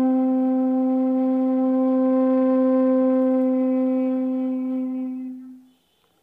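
Bamboo bansuri flute holding one long, steady low note for about five seconds, then fading away near the end.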